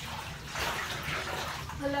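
Water sloshing and swishing in a bathtub as rubber-gloved hands work soaking coats, with a soft swish about every half second.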